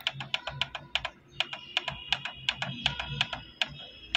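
Rapid clicking of the down-arrow button on a Canon PIXMA TS5340 printer's control panel, pressed over and over to scroll down a list of Wi-Fi networks, with a brief pause about a second in.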